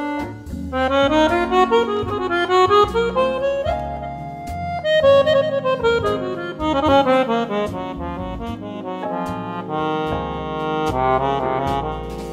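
Petosa piano accordion playing a jazz ballad in quick runs of notes that climb and fall, over low bass notes.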